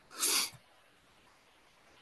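A single short, breathy burst from the man at the microphone, like a stifled sneeze or sharp exhale, near the start, then near-silent room tone.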